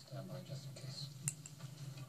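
Quiet, soft speech with a single faint click about a second in, over a low steady hum.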